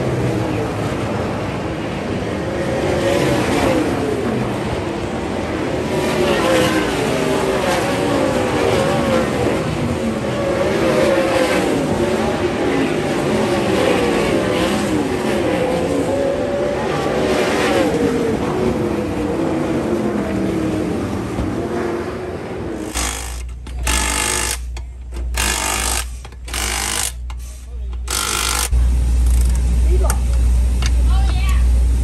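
Several 410 sprint car V8 engines race around a dirt oval. Their overlapping notes rise and fall as the cars power down the straights and lift for the corners. About 23 seconds in the sound cuts to choppy, stop-start noise over a low rumble.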